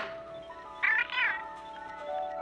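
A short warbling, meow-like electronic chirp from a small TV prop robot about a second in, over sustained background music.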